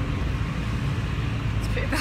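Steady low rumble of a bus's engine and road noise, heard from inside the bus cabin.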